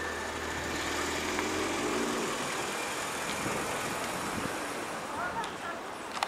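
A car driving past close by, its engine and tyres heard for about two seconds before it fades, leaving general street traffic noise.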